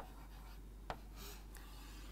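Chalk writing faintly on a blackboard, with a single sharp tap about a second in.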